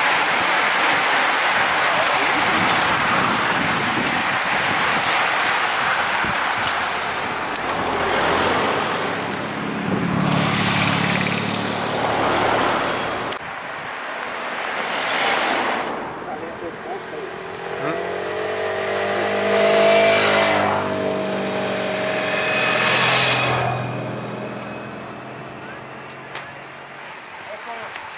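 A road-race peloton passing close by, a steady rush of tyre and wind noise for the first half. Then race-escort motorcycles ride past, their engine note rising and falling and loudest about two-thirds of the way through.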